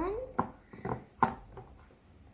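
Scissors snipping at plastic toy packaging: three short, sharp snips about half a second apart.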